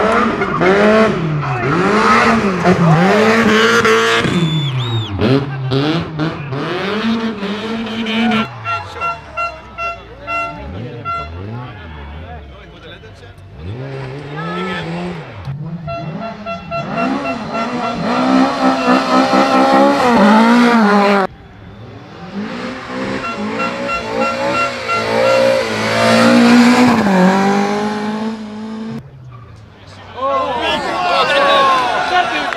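Rally car engines revving hard, the pitch climbing and dropping again and again through gear changes and lifts. The sound comes as several passes cut one after another, each ending in a sudden break.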